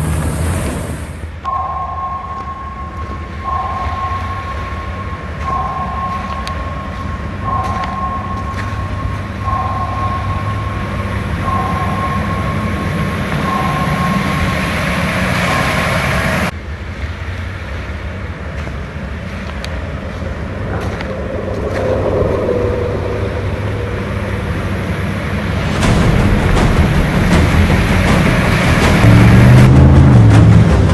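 Hummer H1 driving off-road and through muddy water crossings, its engine rumbling steadily. It gets louder with water splashing in the last few seconds. Through the first half a two-note electronic tone repeats about every two seconds.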